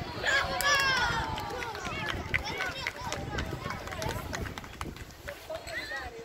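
Several high-pitched voices shouting and calling out across the pitch during a girls' football match, loudest in the first couple of seconds, with a sharp knock about two seconds in.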